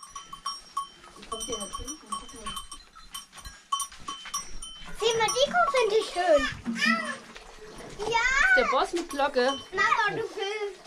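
Small metal bell on a cow's neck clanking with a ringing tone again and again as the cow moves. From about halfway, a child's voice calls out loudly in rising and falling tones over it.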